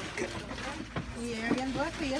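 Indistinct voices of people talking, over a steady low background rumble.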